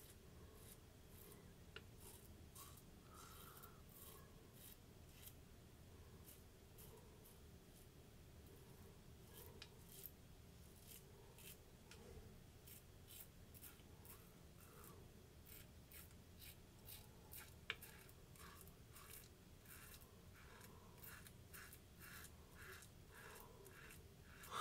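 Rockwell 6C safety razor scraping through lathered stubble: faint, short, crackly strokes in quick runs with small gaps between them.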